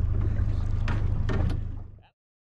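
Small boat's engine idling with a steady low hum, a few light knocks about a second in, fading out near the end.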